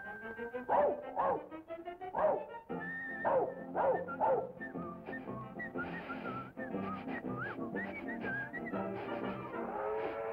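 Early-1930s cartoon soundtrack: band music with about six falling whimpering yelps for the cartoon dog in the first half, then a run of short, high, wavering whistled notes over the music.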